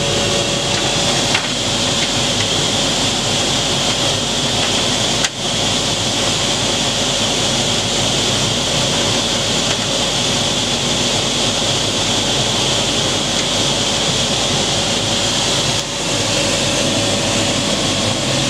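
Steady whirring hiss of workshop machinery around a laser cutting machine, with a high steady whine, briefly dipping twice.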